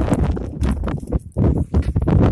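Goats' hooves clicking and scuffing irregularly on bare limestone rock, over a low rumble of wind on the microphone.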